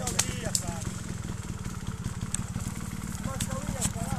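Trials motorcycle engine running at low revs, a fast steady pulsing putter as the rider picks his way over the slope, with a few sharp clicks and knocks.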